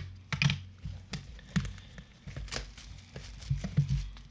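Clear plastic shrink-wrap being torn and peeled off a cardboard trading-card box by gloved hands: irregular crackling and crinkling clicks.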